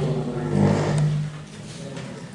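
A man's drawn-out, steady-pitched "ehh" hesitation through a handheld microphone, held for about a second before it stops and only room noise remains.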